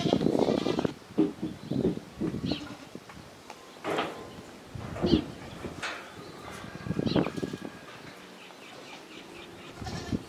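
Goats bleating: a string of separate short calls from several animals in a herd, about half a dozen, with the densest sound in the first second.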